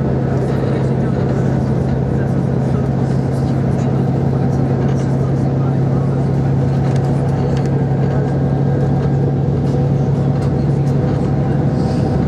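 Bus engine and road noise heard from inside the cabin as the bus climbs a mountain road: a steady low drone.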